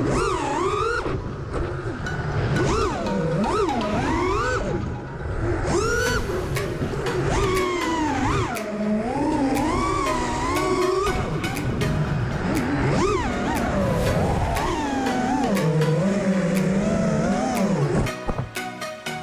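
A 5-inch FPV racing quadcopter's brushless motors and three-blade DAL T5040C props whining, the pitch rising and falling quickly as throttle is punched and cut through turns.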